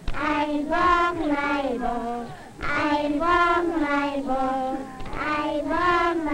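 Children singing a slow melody with long held notes, pausing briefly about two and a half seconds in.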